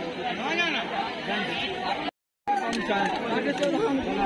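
Many people talking at once: crowd chatter, cut off by a brief moment of dead silence about halfway through.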